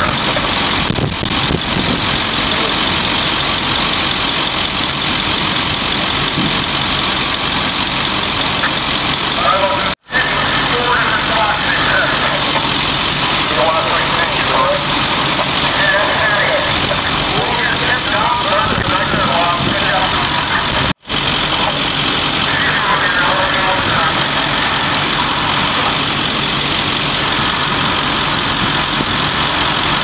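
Fire truck engines idling in a steady drone, with voices faintly in the background. The sound cuts out for an instant twice, about a third and about two-thirds of the way through.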